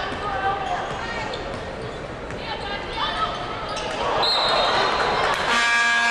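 A basketball bouncing on a hardwood court over the steady noise of an arena crowd and voices. About four seconds in the hall gets louder and a steady high tone sounds, followed near the end by a held note with several pitches.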